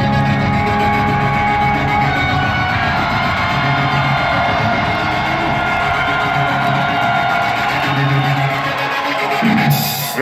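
Loud heavy rock music with guitar and drums, heard from the audience in a concert hall. Long held tones run through most of it, with a sudden change near the end.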